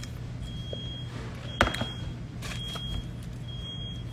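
An electronic beep sounding about once a second, each beep about half a second long, over a steady low hum. There is one sharp click about a second and a half in.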